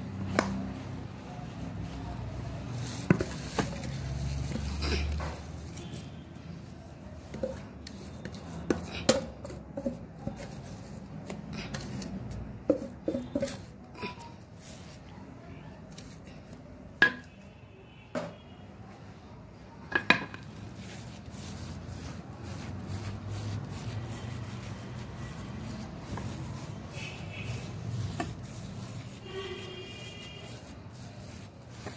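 Crumbly semolina basbousa mixture being tipped into a buttered round metal baking tray and pressed level by hand. Scattered light knocks and scrapes on the metal tray, with soft rubbing between them.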